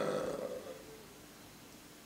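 A man's voice trailing off in a drawn-out hesitation over the first half second or so, then a quiet pause with only faint room tone.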